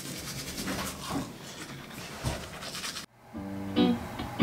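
A toothbrush scrubbing teeth, a scratchy brushing noise for about three seconds. After an abrupt cut, a guitar plays a few held notes near the end.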